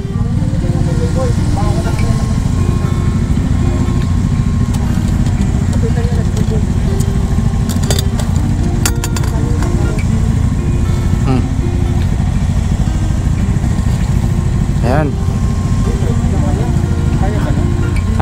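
Motorcycle engine idling steadily, with a few sharp metallic clicks about eight to nine seconds in as a steel ammo-can top box is unlatched and opened.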